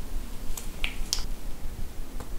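Three short, sharp clicks in the first half, as a silicone spatula drops spoonfuls of mayonnaise onto crumbled egg yolk in a stoneware bowl.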